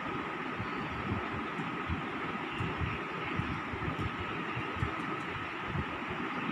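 Steady background hiss and hum with a faint high whine and an uneven low rumble underneath, like a fan or room machinery.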